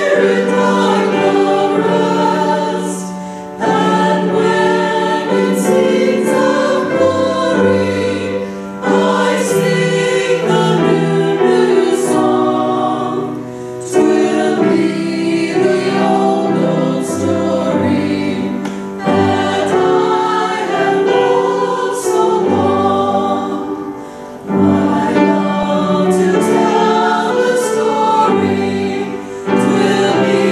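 Small mixed church choir singing a hymn in parts, in phrases of about five seconds with a brief breath between each.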